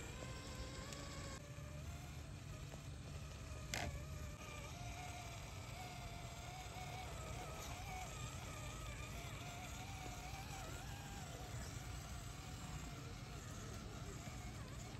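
Electric motor and gear drivetrain of an Axial SCX10 III Early Bronco RC crawler whining faintly as it crawls over dirt and roots, the pitch wavering as the throttle changes. One sharp click about four seconds in.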